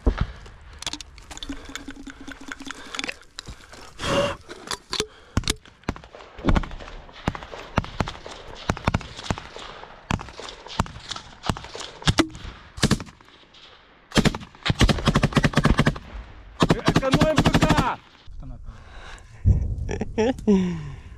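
Small-arms fire at close range: scattered single shots and short bursts of rifle fire, then two long bursts of rapid automatic fire near the end.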